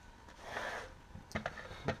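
Plastic digital kitchen scale being handled and set down on a wooden desk: a brief sliding sound about half a second in, then a few light knocks and clicks near the end.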